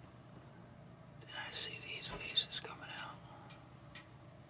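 A person whispering a few words for about two seconds, starting a little after a second in.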